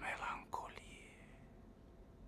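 A man's whispered voice: a breathy word or two in the first second that trails off, then quiet room tone.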